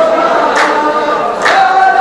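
A row of men chanting a line of poetry in unison on long, held notes, with one loud group handclap about every second: two claps, near the start and about three quarters of the way through.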